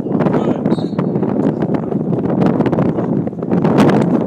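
Wind buffeting a phone's microphone: loud, steady rumbling noise with frequent crackles that covers the other sounds.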